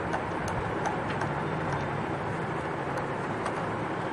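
Steady background rumble with a low hum, and a few faint clicks and scrapes of a screwdriver turning the screw on a sewing machine's metal rotary hook.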